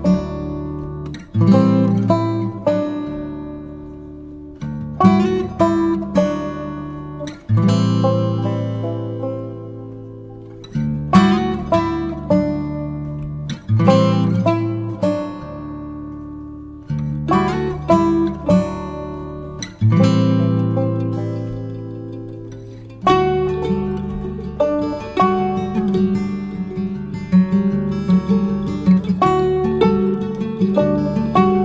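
Background music of a plucked acoustic guitar: clusters of picked notes and chords, each ringing and fading before the next.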